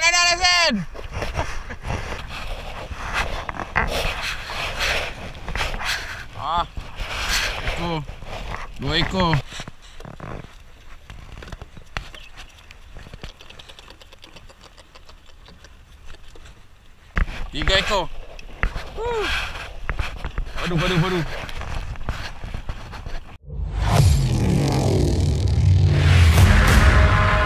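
People's voices calling out in short bursts over steady wind and sea noise on a small open fishing boat. Near the end the sound cuts off abruptly and loud intro music begins.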